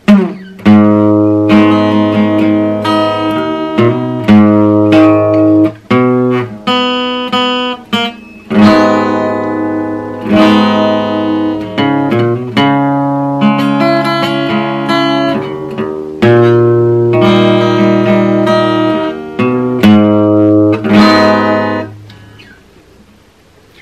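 Solo acoustic guitar playing an instrumental introduction: chords and picked melody notes, each phrase struck firmly and left to ring and die away before the next.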